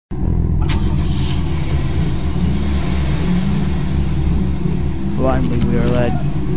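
A loud, steady low rumble that starts suddenly, with a man's voice beginning to speak near the end.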